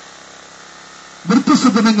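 A steady, low mechanical hum during a pause in the talk, then a man's voice over a microphone and loudspeaker from a little over a second in.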